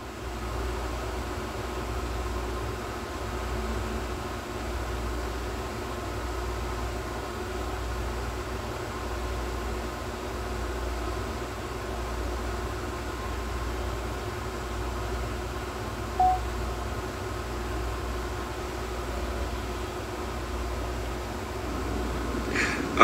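Steady mechanical hum of a running machine, with a strong low drone and a few faint steady tones. A short high blip comes about 16 seconds in.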